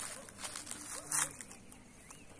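A young cow feeding on ripe plantain peels among dry fallen leaves: two short rustles as it crops the food, one at the start and one just over a second in.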